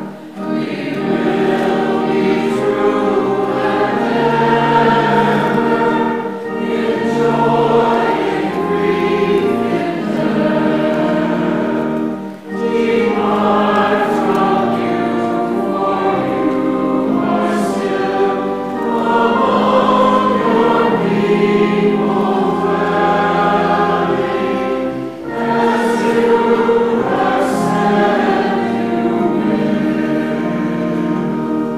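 Many voices singing a hymn together over sustained organ accompaniment, in phrases with brief pauses between them, the clearest break about twelve seconds in.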